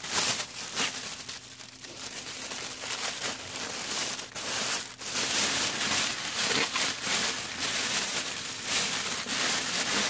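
Clear plastic shrink-wrap bag crinkling and crackling continuously as it is pulled up around a gift basket.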